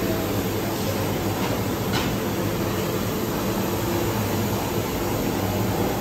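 Steady low drone and hiss of running kitchen equipment, with a faint click about two seconds in.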